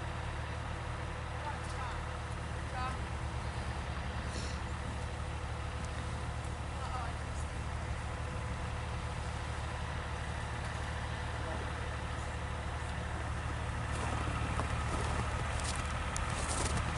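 A vehicle engine idling steadily, a low even rumble that grows a little louder near the end.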